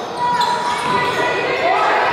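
Basketball game sounds in a gym: a ball being dribbled on the hardwood court and short squeaks, with voices of players and spectators echoing in the hall.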